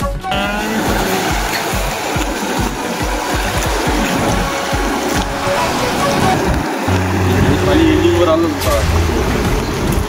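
Rushing floodwater of a river in spate pouring over a submerged causeway: a loud, steady wash of water noise, with wind buffeting the microphone.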